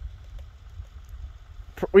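A low, steady rumble with no other distinct sound, and a man's voice starting right at the end.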